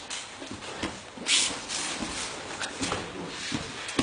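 Two grapplers scuffling on mats in a jiu-jitsu roll: irregular rubbing, shuffling and light knocks, with a short sharp hiss about a second in.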